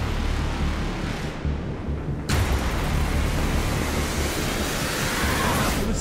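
Cinematic intro sound design: deep rumbling booms under a dense rushing noise, with a sharp hit about two seconds in and a rising hiss near the end.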